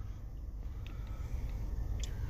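Low steady rumble with a few faint clicks inside a car cabin, the background and handling noise of a handheld camera.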